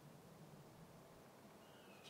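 Near silence: faint, steady outdoor ambience.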